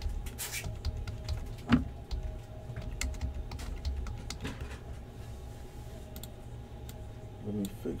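Typing on a computer keyboard: a string of irregular key clicks as numbers are entered, with one louder click a little under two seconds in.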